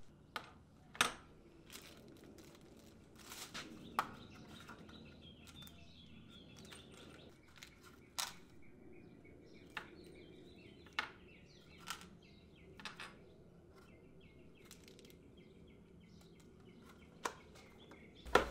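Hydraulic brake parts and their cardboard box and plastic packaging being handled on a tabletop: scattered light clicks and taps, the sharpest about a second in and about four seconds in.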